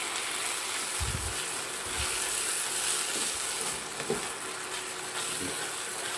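A pumpkin stir-fry sizzling in a nonstick frying pan as a spatula stirs and scrapes it, with a steady hiss and two low thumps about one and two seconds in.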